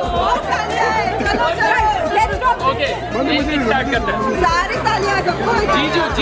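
Several people talking over one another in lively, laughing banter, with music playing underneath.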